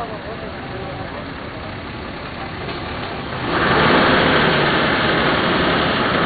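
A motor vehicle's engine running close by, suddenly much louder about three and a half seconds in, with voices around it.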